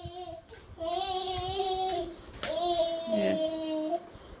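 A young child singing in a singsong voice, holding long drawn-out notes of about a second each, the last one lower.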